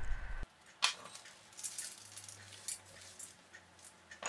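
Faint, scattered ticks of whole peppercorns and seasoning being sprinkled by hand onto a beef tenderloin and a stainless steel roasting pan.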